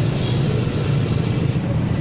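Steady road traffic noise, a continuous low rumble of passing vehicles from the roadside.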